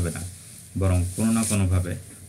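A man's voice narrating in Bengali, resuming after a short pause, with a faint steady hiss underneath.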